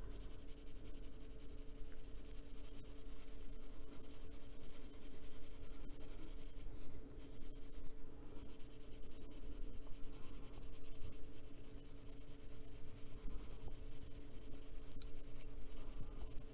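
Colored pencil shading on paper: a continuous run of quick, small scratching strokes.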